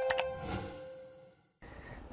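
The closing notes of a TV station's intro jingle: a couple of bright strikes over held tones that ring out and fade away within about a second and a half.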